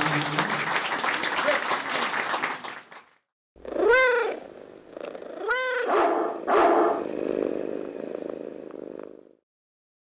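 Crowd applauding and cheering, cut off abruptly about three seconds in. After a brief silence comes a recorded animal sound effect: a cat meows twice, then a dog barks twice.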